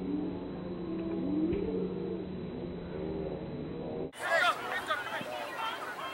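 Distant, muffled voices of players and spectators calling out, over a steady low hum. About four seconds in, the sound cuts abruptly to a clearer recording with louder shouts and calls.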